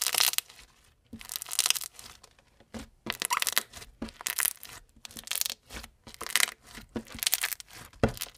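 Crunchy slime with small foam beads being pressed and kneaded by hand, giving short bursts of crunching and crackling about once a second.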